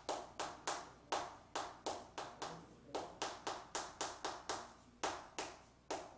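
Chalk writing on a chalkboard: a quick, uneven run of sharp taps, about three a second, as the stick strikes and drags across the board.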